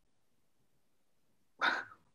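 Near silence, then a single short burst of a person's laughter near the end.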